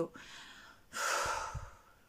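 A woman breathing audibly: a soft breath, then a louder, deeper breath about a second in that fades away.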